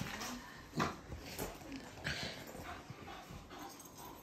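Bull-terrier-type dog making short, irregular excited sounds as it jumps up on a person and climbs about on a bed.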